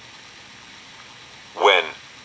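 Steady low hiss of cassette tape playback. A single spoken word breaks in near the end.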